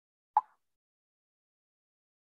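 A single short, sharp pop about a third of a second in, with silence after it.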